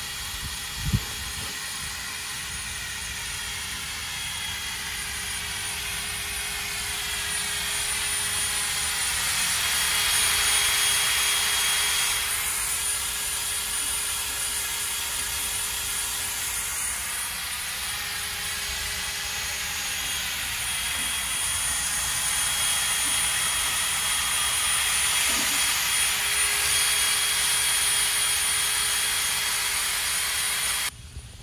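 Cordless drill spinning a rubber eraser wheel against an RV's fiberglass front mask, stripping the old 3M mask coating off the paint: a steady whirring grind that swells and eases as it is worked. A sharp knock about a second in.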